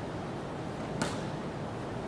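A single short, sharp click about a second in, over a steady room hiss.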